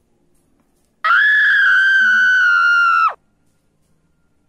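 A loud, high-pitched scream held on one steady, slightly falling note for about two seconds, then cut off with a quick drop in pitch.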